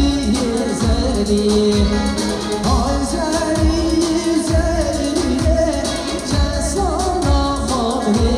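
Live Kurdish folk-pop band: a male singer's amplified vocal over a keyboard with a drum beat and a saz (long-necked lute), played loud through a PA for line dancing.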